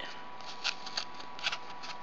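Soft scratchy rustles of cord being pulled out of and slipped into the slits of a notched cardboard braiding disc: a few short, faint scrapes spread across the moment.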